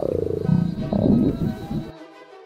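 Cartoon stomach-growl sound effect for an upset tummy: a low rumbling growl that starts suddenly with a falling pitch and swells again about a second in, over background music.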